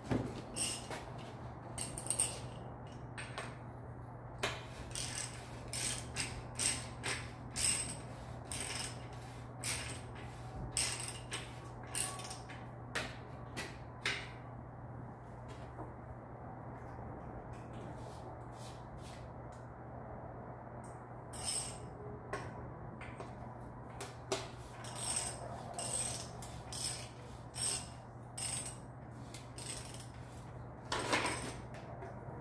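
Clusters of small sharp clicks and clinks as bicycle bottom bracket parts and tools are handled and fitted at the frame. They come a few a second, with a lull of several seconds in the middle, over a steady low hum.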